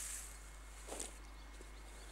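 Faint rustling and handling noise as a kneeling person moves gear in long grass: a soft swell at the start and another short one about a second in, with a few faint ticks.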